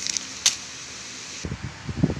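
Tabletop handling sounds as a ceramic mug and a foil coffee sachet are moved about: a sharp click about half a second in, a steady faint hiss, then a run of soft knocks and rustles near the end.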